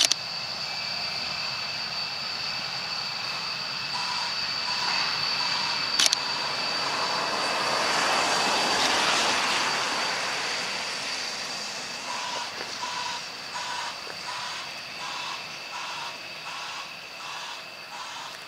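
Jet engines of a B-1B bomber running on the airfield: a steady high-pitched turbine whine under a rushing engine noise that swells to its loudest about halfway through and then fades. A pulsing electronic beep, about two a second, starts a few seconds in, and a single sharp click comes at about six seconds.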